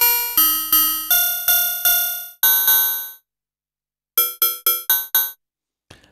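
Korg monologue analogue synthesizer playing a metallic, bell-like percussion patch made with ring modulation and audio-rate LFO frequency modulation of pitch. A run of short struck notes at changing pitches, about three a second, ends with one longer note; after a pause of about a second come five quicker hits.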